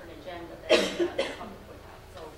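A person coughing: a short cluster of about three coughs close together, the first and loudest less than a second in, with quiet talking around it.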